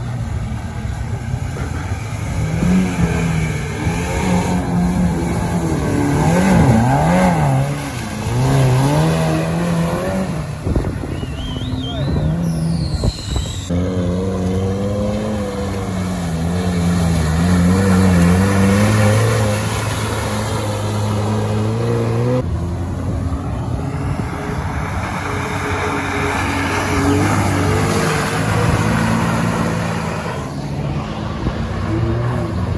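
UAZ off-road vehicles' engines revving hard through deep mud, the engine pitch rising and falling with the throttle.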